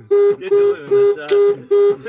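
Car horn sounding in short, evenly spaced beeps, about three a second, one steady tone each time, with laughter between.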